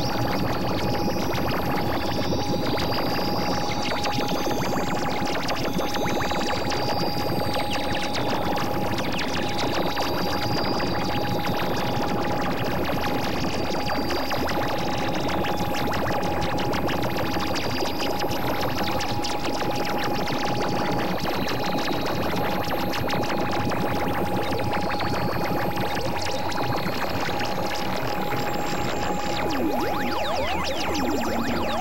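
Experimental electronic drone music: a dense, noisy synthesizer texture under one steady held tone, with short wavering high tones drifting in and out.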